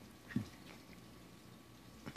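A dachshund puppy gives one short, low grunt about a third of a second in.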